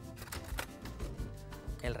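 Background music with a few light knocks on a wooden cutting board as a piece of beef tenderloin is handled.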